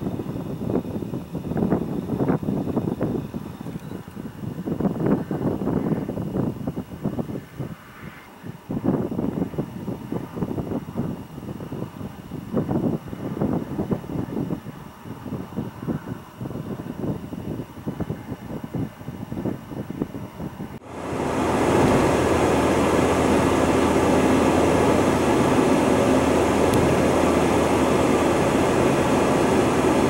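An uneven rumbling noise that rises and falls for about twenty seconds, then cuts abruptly to the steady road and engine noise of a car driving at freeway speed, heard from inside the cabin.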